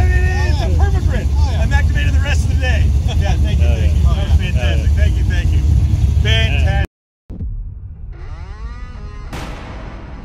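Two men laughing and talking over a heavy low rumble. The sound cuts out about seven seconds in, and background music begins with a rising sweep of tones.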